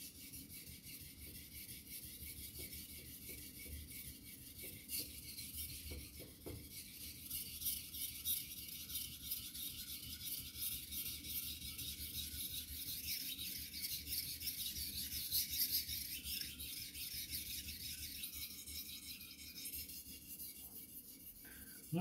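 A carbon-steel-cored kitchen knife is stroked back and forth across an Imanishi Bester #1000 water stone, making a continuous scratchy rasp of steel on stone. The rasp comes from a hard, fast-cutting stone that removes metal aggressively.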